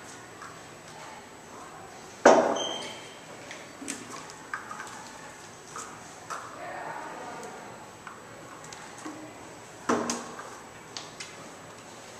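Plastic and glass bottles, caps and paper cups handled on a tabletop while juice and vinegar are poured into the cups. There is a sharp knock about two seconds in with a brief ringing ping, scattered light clicks, a faint trickle of pouring in the middle, and another knock near the end.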